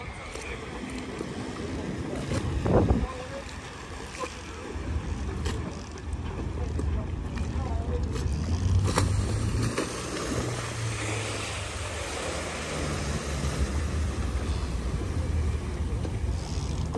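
Low, steady rumble of a large motor yacht's engines and thrusters manoeuvring, setting in about five seconds in. Wind buffets the microphone, hardest just before three seconds in.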